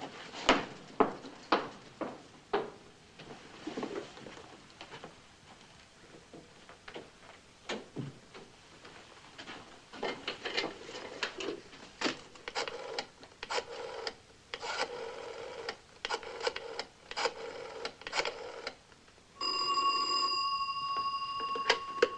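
Scattered clicks and knocks as a rotary desk telephone is handled and dialed. Near the end a telephone rings, one steady ring of about three seconds.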